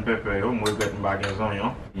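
Clinks of cutlery and dishes from food being handled at a kitchen counter, with two sharp clinks close together a little over half a second in, under a man's voice talking.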